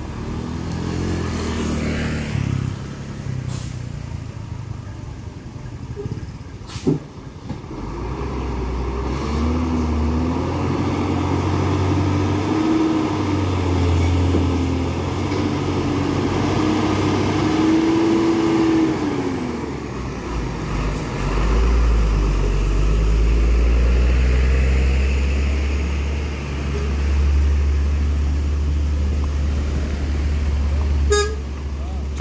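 Heavy Hino diesel trucks running as they crawl slowly past close by. One engine's pitch climbs gradually for about ten seconds and then drops, and a deep, loud engine sound fills the second half. There is a single sharp knock about seven seconds in.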